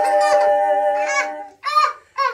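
Two women humming a held two-part harmony a cappella, with a baby's high squealing and babbling cries over it. The hum stops about a second and a half in, and one more squeal follows.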